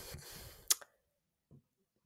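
A single sharp click about two-thirds of a second in, after a faint fading rustle.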